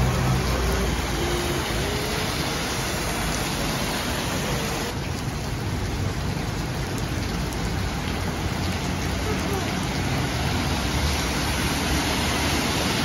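Heavy tropical rain pouring steadily onto a flooded road, a dense, even hiss. There is a low rumble of cars driving through the standing water at the start and again toward the end.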